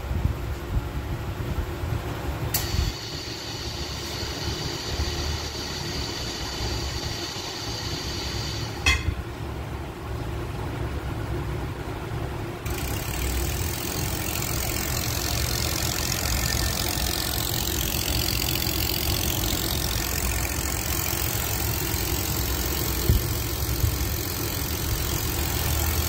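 Pneumatic air motor of a paint-tank agitator starting about halfway through and then running steadily, with an even hiss of exhaust air. Before it there is a quieter steady machine tone, broken by a sharp click.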